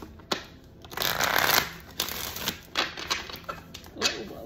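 A deck of tarot cards being shuffled by hand: a sharp snap early, a dense riffling rush around the one-second mark, then a run of short card clicks and taps.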